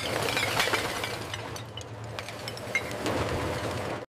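Glass bottles clinking and breaking as a steel screw auger churns them along a metal trough, with scattered sharp cracks of glass over a steady low machine hum.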